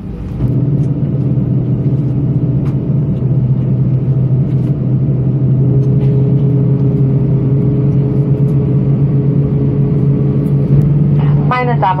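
Cabin noise of an Airbus A320-214 taxiing, with its CFM56 engines at idle heard from a seat over the wing: a loud, steady low hum with a few held tones. A higher tone joins about halfway through.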